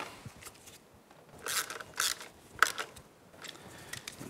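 Hand ratchet and socket clicking in a few short bursts as a front brake caliper bolt is snugged down, with a sharp metallic click near the end.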